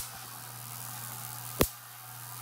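Electric sparks jumping the ball-electrode spark gap of a Wimshurst influence machine (electrostatic generator): two sharp snaps like a cap gun, one right at the start and one about a second and a half in, over a faint steady hiss.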